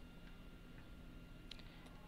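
Faint computer keyboard keystrokes: a couple of short, sharp clicks about one and a half seconds in, over near-silent room tone.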